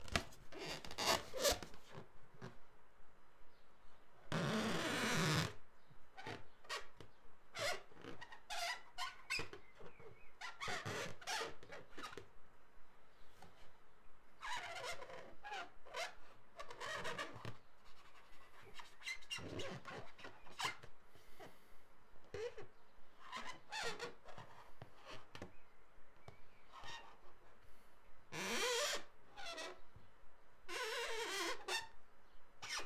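Inflated latex balloon being handled and written on with a marker pen: irregular short squeaks and rubs of pen tip and fingers on the rubber, with a louder, longer rub about four seconds in.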